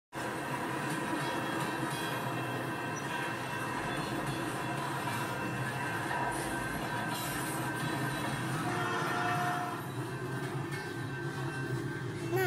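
Freight train rolling past: a steady rumble and clatter of passing wagons with steady high tones over it, easing off near the end.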